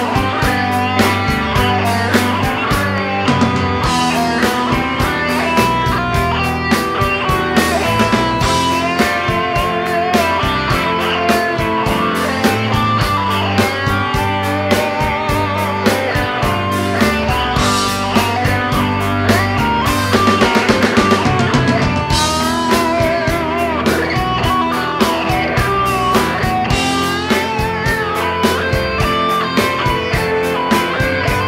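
Live rock band playing an instrumental passage: a lead guitar line with wavering, bent notes over drums and bass.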